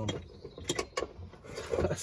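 A few short, sharp mechanical clicks and rattles, bunched together about half a second to a second in, from handling the seatbelt's lower anchor bolt and fittings.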